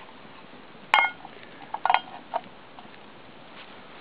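Metal mess-tin pot on a twig-burning camp stove clanking: one sharp ringing metallic clank about a second in, then a few lighter clinks and taps around two seconds.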